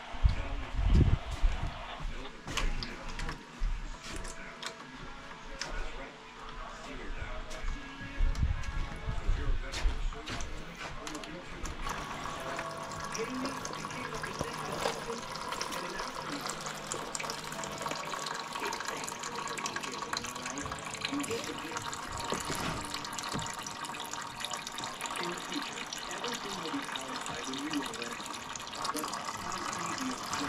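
Engine oil draining in a steady pour from the Predator 3500 inverter generator's crankcase drain into a drain pan. The pour settles in about twelve seconds in, after a few knocks and clunks at the start.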